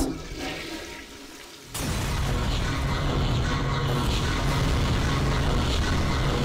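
A steady, water-like rushing noise with a low hum underneath, starting abruptly about two seconds in after a fading tail of sound.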